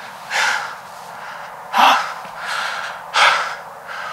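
A man breathing hard right at the microphone, about three deep breaths a second and a half apart, the middle one a short voiced gasp: the excited, adrenaline-charged breathing of a hunter who has just shot a buck.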